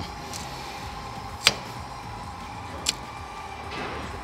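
Rotary hole-punch pliers squeezed on a heavy-duty strap: a sharp click about a second and a half in, the loudest sound, and a smaller click about a second and a half later, over a steady faint hum.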